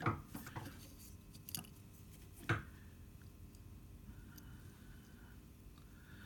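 Milling machine spindle carrying a dial test indicator being turned slowly by hand: a few faint light clicks and knocks, the clearest about two and a half seconds in, and a soft faint rubbing sound later on, over quiet workshop room tone.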